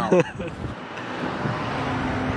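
A car driving by on the road, its engine and tyre noise growing louder through the second half as it approaches.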